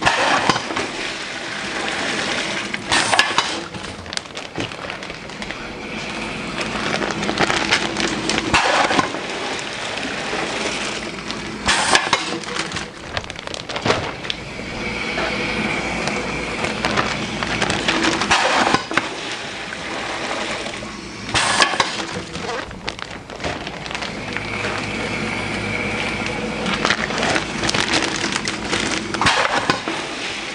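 Mushroom substrate wet-bagging machine cycling through fills: pneumatic cylinders snap its square knife valves open and shut, and pelletized substrate and water drop into plastic grow bags. Several loud clattering bursts come a few seconds apart, with plastic bags crinkling as they are handled between fills.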